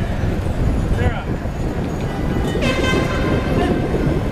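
Cyclists riding in a dense group, with a steady rumble of wind and riding noise on the microphone and scattered voices. About two and a half seconds in, a horn sounds once and holds for about a second.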